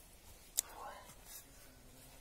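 A single sharp click about half a second in, then a short scraping rustle: a steel shovel pulled out of sandy soil and lifted.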